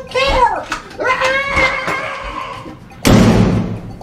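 An interior door slammed shut about three seconds in: one loud hit with a brief rumble after it.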